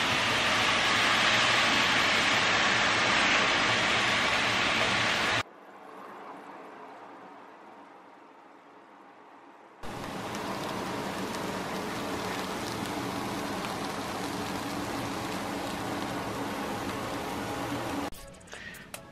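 Ground chicken and broccoli sizzling in a frying pan: a loud, even sizzle for about five seconds, then a much quieter stretch of about four seconds, and the sizzle returns more softly for the rest.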